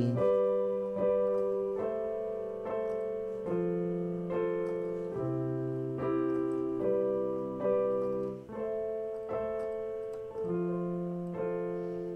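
Digital keyboard with a piano sound playing a two-handed chord progression in C major: block chords in the right hand over single bass notes in the left. It starts on a C major chord and reaches F major near the end, with the chords changing about every one and a half to two seconds and each one fading after it is struck.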